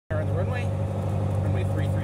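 Light training airplane's piston engine running steadily, heard from inside the cockpit as an even low drone, with a voice speaking over it.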